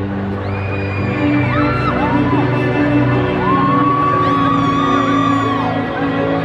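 Slow ambient music with long held low chords playing over an arena sound system, while fans scream and whoop over it in several rising, held cries; one long high scream lasts about two seconds near the end.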